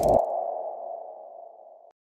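Logo-animation sound effect: a hit at the start, then a single ringing mid-pitched tone that fades away and cuts off just before two seconds.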